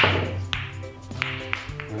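Pool balls clicking against one another and against the cushions after a break shot, over background music: the crash of the break dies away at the start, then several separate sharp clicks follow.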